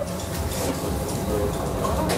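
Café room noise: a steady low hum with faint background voices.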